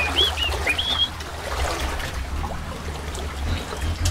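A bird calls four short whistled notes, rising and arching, in the first second, then stops. Water laps and trickles around the rocks, under a steady low rumble.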